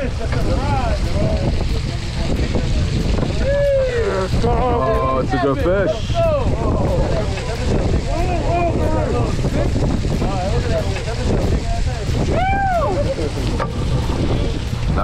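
Steady wind noise on the microphone and boat noise at the rail, with people calling out in short excited exclamations now and then, the loudest about four and twelve and a half seconds in.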